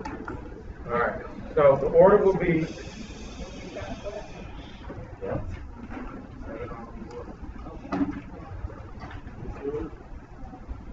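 Indistinct talking in a small room, loudest a second or two in, with a brief hiss from about three seconds in.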